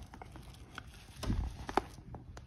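Quiet handling noises: a few light clicks and taps, with a soft knock about a second and a half in and a sharper click just after, as hands work a small metal crimp and crimping pliers over a towel-wrapped bird.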